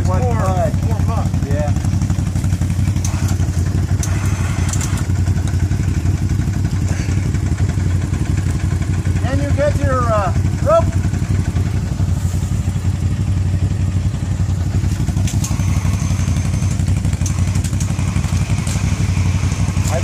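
An ATV engine running steadily at a constant speed, a low even hum with no revving. Short bursts of voices break in near the start and again around ten seconds in.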